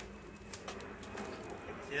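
A faint, low bird call over quiet background voices.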